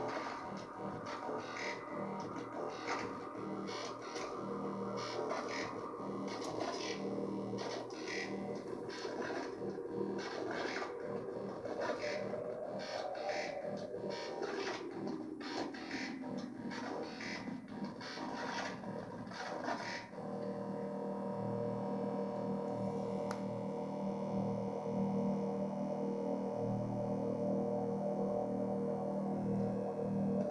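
Eurorack modular synthesizer playing a step-sequenced pattern, the SQ-8 sequencer clocked from MATHS and running without skipping steps. Over the first two-thirds there are quick sharp notes with a pitch that sweeps up and back down. About twenty seconds in, the sharp notes stop and steadier held tones with a pulsing low note take over.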